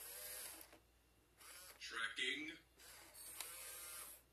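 WowWee RS Media toy robot whirring in short spells as its motors move, with a brief electronic voice sound from the robot about two seconds in.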